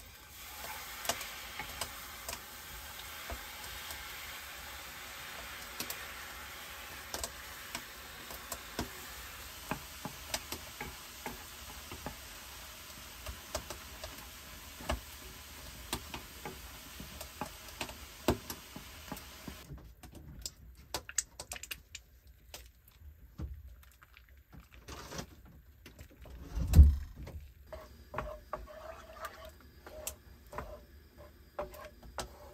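Food sizzling in a hot frying pan on a portable gas stove as liquid is poured in, with a wooden spatula clicking and scraping against the pan. The sizzle stops abruptly about two-thirds through, leaving scattered clicks of stirring and one loud, heavy thump near the end.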